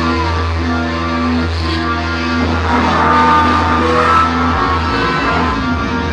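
Rock band playing live: sustained electric guitar chords over a steady bass note, the low part shifting about four and a half seconds in, with no vocals.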